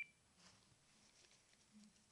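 A short two-note electronic beep from a Samsung cell phone right at the start, as its charging cord is handled, then near silence with faint rustling.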